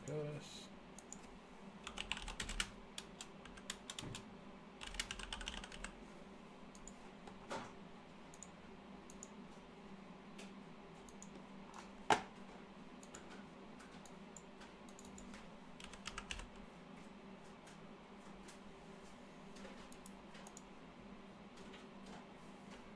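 Faint bursts of typing on a computer keyboard, a few keystrokes at a time with pauses between, and one sharper click about twelve seconds in, over a faint steady hum.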